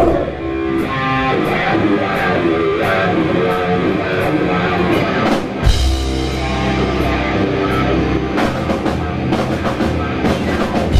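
Heavy metal band playing live through a club PA: distorted electric guitar carrying a melodic lead line over bass guitar and drum kit. A little past halfway the low end suddenly gets heavier as the bass and kick drum come in hard.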